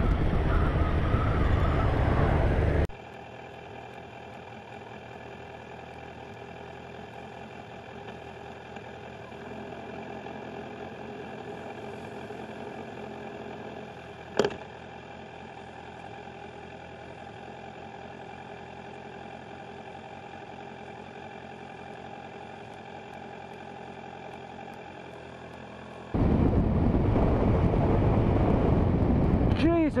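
Kawasaki Z1000 inline-four being ridden, with heavy wind rush on a helmet-mounted microphone, cutting after about three seconds to a much quieter, steady drone made of many even, unchanging tones, broken once about halfway through by a single sharp click. Near the end the loud riding wind and engine noise returns.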